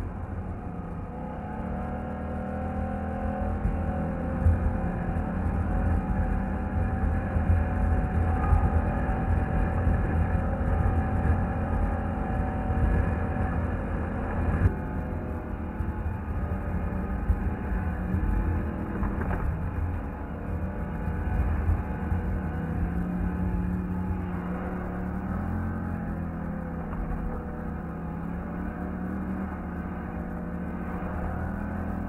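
Polaris ATV engine running steadily as the quad is ridden over rough dirt, with a heavy low rumble; the engine pitch rises and falls with the throttle in the second half. The sound changes abruptly about halfway, at a cut.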